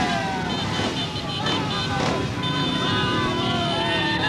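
Many small motorcycle engines running together in a slow-moving motorcycle parade, with voices shouting over them.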